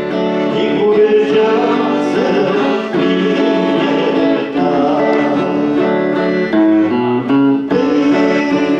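A worship song played live: an electric guitar with voices singing along.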